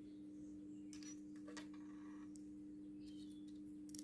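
A few faint clicks of small steel parts, a button-head screw, washer and ball bearing, being handled and fitted together by hand, over a steady low hum.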